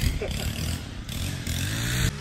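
An engine running steadily at a constant pitch, with a faint voice just after the start.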